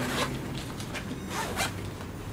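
Zipper on a ThinkTank Shape Shifter 15 V2.0 camera backpack pocket being pulled, in two short runs: one near the start and a longer one about a second and a half in.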